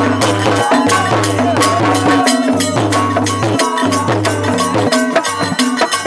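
Bhojpuri dhobi geet folk music with a steady percussion beat of sharp, fast strokes over a sustained low drone and a melody line.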